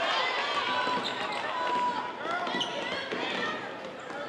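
Live basketball game sound on a hardwood court: the ball dribbling and sneakers squeaking, with voices on and around the court.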